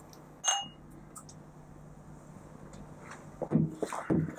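Two drinking glasses clinked together once in a toast: a short, bright ringing tink about half a second in, then quiet room tone.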